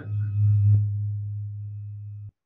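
A low, steady hum on a dial-in telephone line, loudest before the first second and easing slightly after, with a faint high steady tone above it.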